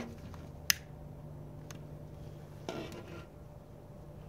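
A long-nosed utility lighter clicking as it lights a small alcohol burner: one sharp click under a second in, then a much fainter click about a second later, over a low steady hum.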